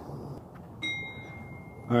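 A single clear ding about a second in, ringing on as one steady tone for about a second while fading, over faint outdoor background noise.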